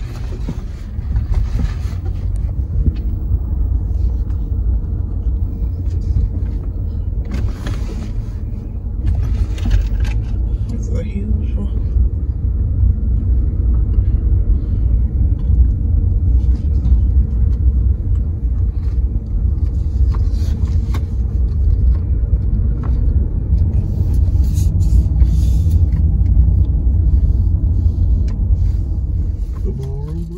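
Steady low rumble of a car's engine and tyres, heard from inside the cabin while it drives slowly.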